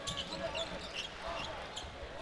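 Basketball game sound from the court: a low crowd murmur in the arena with faint, scattered squeaks of sneakers on the hardwood floor.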